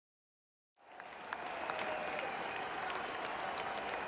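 Silence for about the first second, then a baseball stadium crowd applauding and chattering at a steady level, with scattered individual claps.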